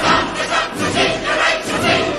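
A large chorus of many voices singing loudly together with an orchestra, in a rhythmic, pulsing finale.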